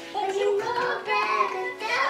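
A child singing a gliding melody, with music playing behind it.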